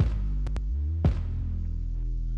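Soloed kick drum and synth bass from a pop mix playing back: two kick hits about a second apart over sustained low bass notes. The bass runs through a Kush Audio REDDI tube DI plugin and Decapitator saturation, which add low end, level and drive.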